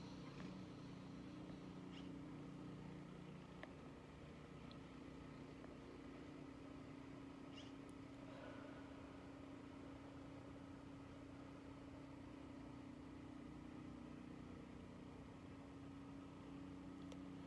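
Near silence with a faint, steady low hum.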